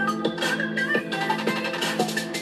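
Electronic music playing as a DJ mix from Serato DJ controllers, with a steady beat and short, bright melodic notes repeating over it.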